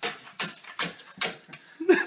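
A corgi hopping down wooden stairs, its paws landing on each tread in a steady series of thumps, about two or three a second. A person laughs near the end.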